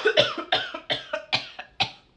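A voice in a quick run of about eight short, sharp bursts, each cut off abruptly, stopping near the end.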